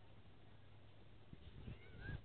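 Near silence: faint outdoor background with a few soft low thumps, and two faint short high calls that rise and fall near the end.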